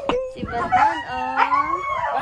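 Siberian huskies howling and 'talking': a run of short pitched calls that waver up and down, one after another.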